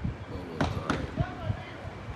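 A run of short, dull thumps, about five in two seconds, two with a sharp click on top, mixed with people's voices.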